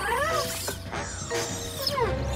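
Cartoon background music with warbling, gliding electronic chirps from a small cartoon robot (PJ Robot).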